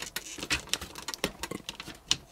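Hard plastic parts of a Transformers Studio Series Devastator figure clicking and rattling as hands work its joints and pieces through a transformation: a quick, irregular run of small clicks.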